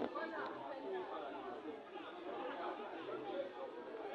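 Several voices overlapping at once, unintelligible chatter and calling out from players and onlookers around a football pitch.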